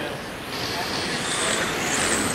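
Electric radio-controlled touring cars racing on a carpet track, their motors and tyres making a steady noisy whir that grows louder near the end as the pack comes closer.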